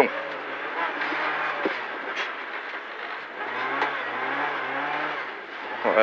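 Renault Clio N3 rally car's four-cylinder engine heard from inside the cabin, working hard with its note rising and falling, over steady tyre and road noise.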